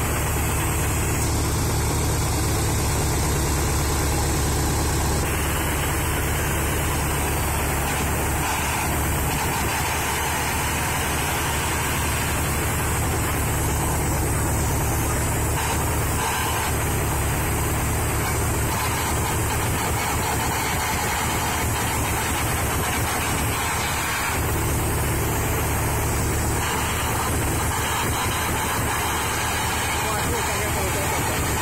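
A heavy engine idling steadily, a low even hum that does not change.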